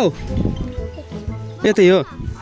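Background music with a singing voice: a sung note slides down at the start, and another wavering sung phrase comes in just before the end.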